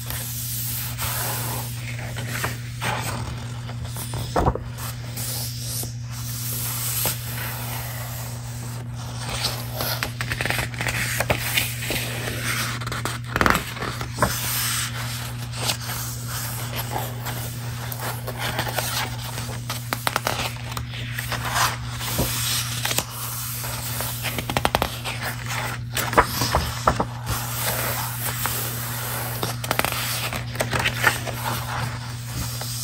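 Paper pages of a book being handled, rubbed and scraped: continuous crisp rustling broken by many sharp crackles and taps.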